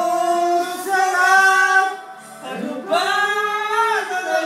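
A man singing into a microphone, holding long notes that slide up into pitch, in two phrases with a short break about two seconds in.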